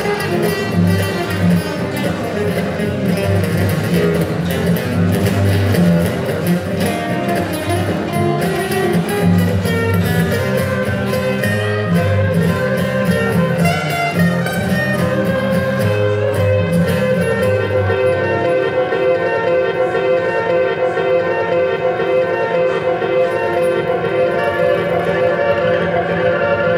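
Solo steel-string acoustic guitar playing an instrumental passage, without singing. About two-thirds of the way through, the low bass notes drop away and higher ringing notes carry on.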